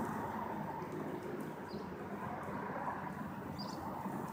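Steady low road and wind noise of a moving car with its window down, with three faint, short, high chirps.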